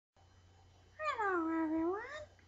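A single high-pitched, drawn-out vocal call that begins about a second in, dips in pitch and then rises again.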